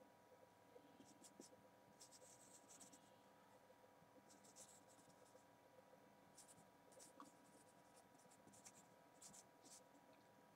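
Very faint strokes of a marker pen writing on a whiteboard: a string of short, scratchy squeaks as the letters are drawn.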